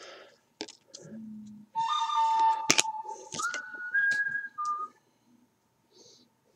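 A short tune of steady whistle-like notes, a long low note and then higher ones stepping up and back down, over a few sharp clicks and rustles of cards being handled.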